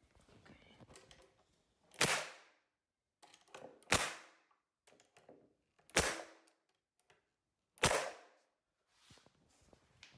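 Pneumatic nail gun firing four nails into a fiberboard panel, one sharp shot about every two seconds, each with a short ringing tail.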